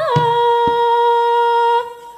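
A female singer holds one long, steady note, with a drum stroke or two under its start. The note cuts off shortly before the end.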